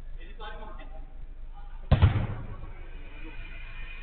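A football struck hard: one loud, sharp thud about two seconds in, with a short ringing tail.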